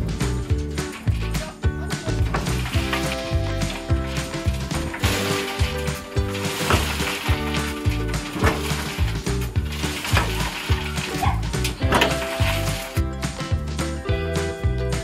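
Background music with a steady beat, over which a shovel scrapes through wood chips and tips them into a steel wheelbarrow a few times.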